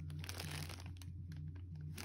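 Faint crinkling of a clear plastic bag around a jersey as it is handled, over a low steady hum.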